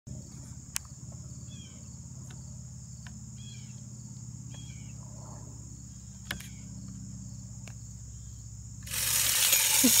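Steady high drone of insects with a few sharp clicks from handling the deer feeder's bottom unit. About nine seconds in, a sudden loud rushing, rattling noise starts as the feeder's spinner kicks on, and a man laughs over it.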